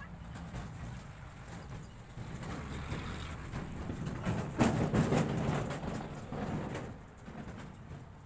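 A motor vehicle passing by: a low rumble that swells to its loudest about five seconds in, then fades away.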